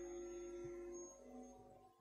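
Near silence: room tone in a pause between words, with faint steady tones that fade away over the first second or so.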